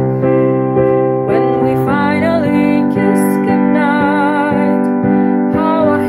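A young woman singing with vibrato on held notes over sustained piano chords that she plays herself.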